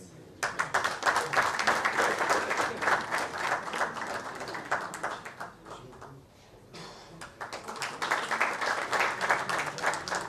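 Audience applauding. The clapping starts about half a second in, dies down briefly around the middle, then swells again.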